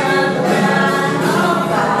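Christian worship song: voices singing a held, gliding melody, with little percussion in this stretch.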